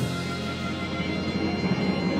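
Texas blues band playing live: a sharp accented hit right at the start, then held notes ringing over the bass and drums.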